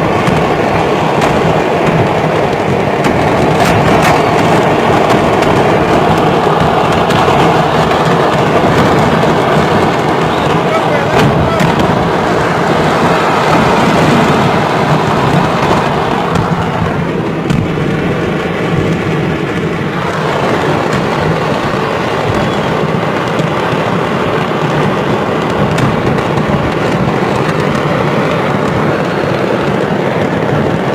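A mass of fireworks going off at once in a large explosion: continuous dense crackling and popping with many sharp bangs, easing a little in the last third.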